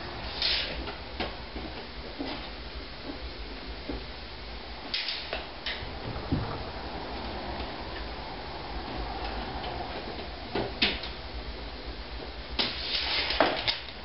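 Workshop handling noise from checking a measurement with a steel tape measure on a wooden board: scattered light clicks and knocks, with a few brief scrapes, over a low steady hum.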